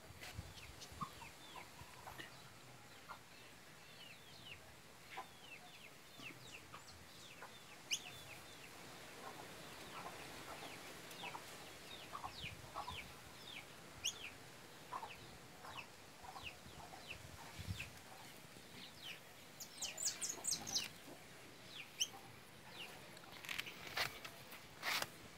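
Faint bird calls: many short, downward-sliding chirps scattered throughout, busier near the end.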